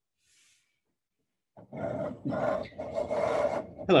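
A man's low, rough vocal sound, about two seconds long and broken a few times, starting after a second and a half of near silence and running straight into the spoken word "hello".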